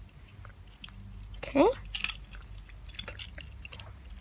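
Small plastic clicks and taps of Lego bricks being handled and pressed together onto a model car, scattered irregularly. A brief rising vocal "hm" about one and a half seconds in.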